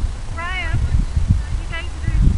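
Wind buffeting the microphone, with two short, high, wavering cries, a longer one about half a second in and a brief one near the end.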